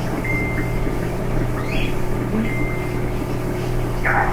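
Steady low hum under even background noise, with a couple of short, faint high tones.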